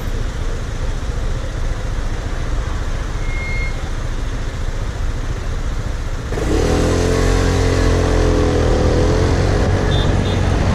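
Aprilia Scarabeo 200ie scooter's single-cylinder four-stroke engine with traffic noise around it, then revving up about six seconds in as the scooter pulls away, the engine note rising quickly and then holding steady and louder.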